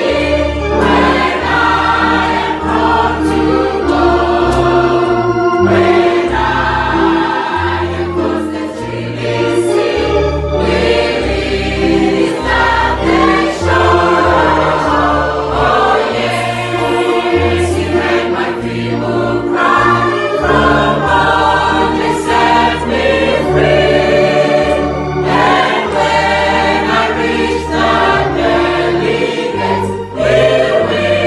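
Congregation singing a slow gospel hymn together, accompanied by a keyboard playing sustained bass notes and chords.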